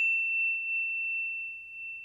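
A single bell-like sound-effect ding, one clear high tone that rings on and slowly fades.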